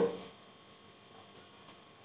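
A faint, steady electrical hum in the room tone, just after a man's spoken word trails off at the start.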